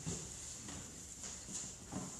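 Quiet room tone with a steady hiss and a few faint light taps.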